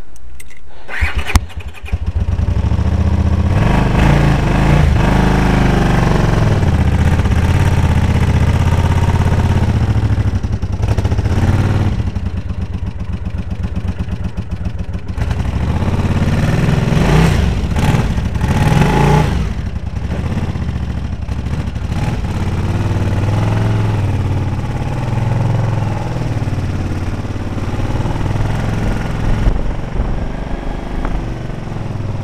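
Honda CX500 motorcycle's V-twin engine starting about a second in, then running and revving up and down several times as the bike moves off.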